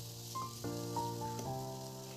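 Soft background music, a slow run of held notes, over a faint sizzle of basmati rice and cabbage frying in ghee.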